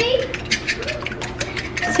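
A fork beating eggs in a nonstick wok, with rapid, repeated clicks and scrapes of the fork against the pan.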